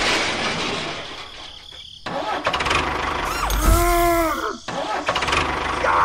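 Sound effects for a toy tractor tipping into a pit: a crash-like noise that fades over the first two seconds. Then an engine-like noise starts suddenly, with a short pitched tone rising and falling near the middle.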